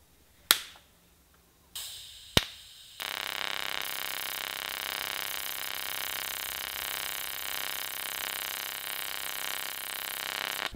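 DC TIG arc from an ARCCAPTAIN TIG 200P on very thin metal. After a sharp click, the arc starts with a soft hiss on its low starting current. About three seconds in, the pulse cycle kicks in and it settles into a steady buzz, pulsing 33 times a second, that sounds like AC welding even though it is DC.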